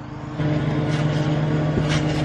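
A steady motor hum, like a distant engine running at constant speed, with one thump near the end as someone lands on the trampoline mat.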